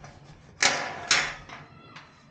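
A pet cat meowing twice, loud and close, the two calls about half a second apart.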